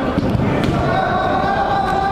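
Football being kicked and thudding on an indoor five-a-side pitch, with players' voices echoing in a large hall; a held call runs through the second half.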